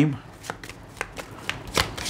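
Tarot cards being shuffled by hand: a run of quick, crisp card flicks that come thicker about a second and a half in.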